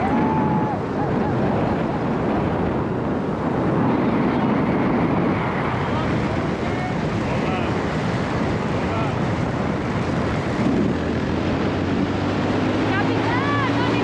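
Wind buffeting the microphone of a moving motorcycle, over engine and road noise. Near the end a steady engine hum becomes clear and rises slowly in pitch as the bike speeds up.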